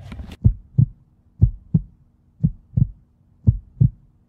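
Heartbeat sound effect: slow double thumps, four of them about a second apart, over a faint steady hum.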